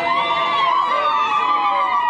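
A crowd of wedding guests singing and crying out in high, long-held voices. Several notes overlap and slide slowly downward.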